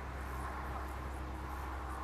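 Steady outdoor background noise with a constant low rumble and a soft hiss, no distinct event standing out.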